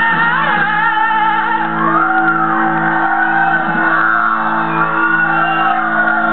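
Live rock band playing, with guitar chords held under a voice singing long wordless notes that slide up and down in pitch. The sound is dull, with no treble, like an old videotape recording.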